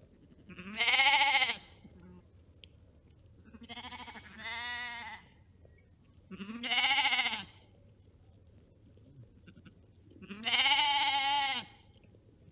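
Sheep bleating: four wavering baas a few seconds apart, the second a quieter double bleat.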